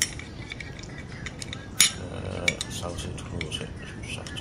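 Chopsticks clicking and tapping against a glass plate while picking up slices of grilled meat: a scatter of sharp clinks, the loudest a little under two seconds in.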